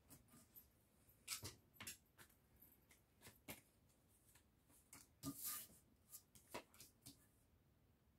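A deck of tarot cards being shuffled and handled: faint, scattered soft snaps and rustles, with a slightly longer rustle about five seconds in.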